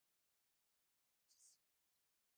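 Near silence, broken by a few faint, very short crackles, the longest about halfway through.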